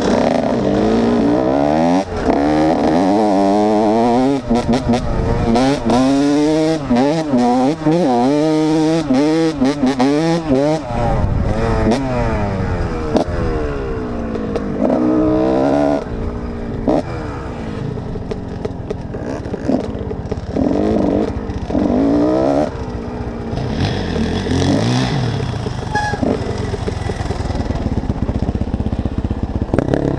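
Kawasaki KX125 two-stroke dirt-bike engine revving up and down hard, again and again through the first half, then running with lower, shorter bursts of throttle. Frequent short knocks and rattles sound over it.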